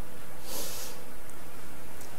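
A quick sniff through the nose, a short hiss about half a second in, over steady room noise.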